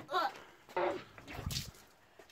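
A person's voice making a few short, wordless noises.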